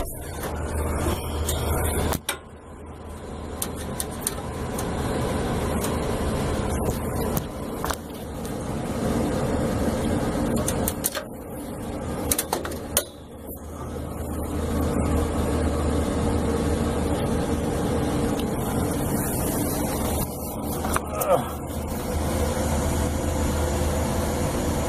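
Steady low hum and rushing noise of rooftop air-conditioning machinery running, with scattered bumps from the camera being handled; the level dips briefly twice.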